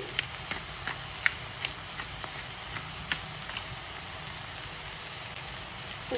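Shredded cabbage and cherry tomatoes frying in a stainless steel pan: a steady sizzle with scattered sharp crackles, which thin out after about four seconds.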